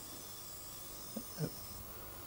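Faint, steady high hiss of a steel sheep-shear blade held against a revolving grinding wheel, stopping near the end, with two brief small sounds about a second in.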